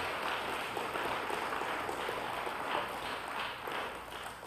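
Congregation applauding: a steady patter of many hands clapping that eases off near the end.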